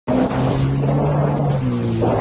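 Boat engine running at a steady pitch, a low hum under rushing wind and water noise.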